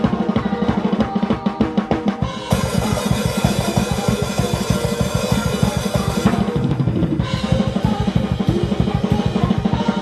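Fast metal drumming on an acoustic drum kit: rapid bass-drum strokes and snare hits. The cymbals wash in loudly from about two and a half to six seconds in. Other music plays along with it.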